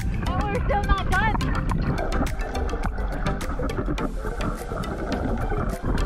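Choppy sea water sloshing and splashing around a camera held at the surface, with wind rumbling on the microphone and many small splashing ticks; a voice is heard briefly in the first second or so.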